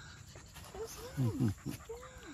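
A dog whining in short, high whimpers that rise and fall, eager to go after a kayaker paddling away. A louder burst of falling cries, or a person's laugh, comes a little past the middle.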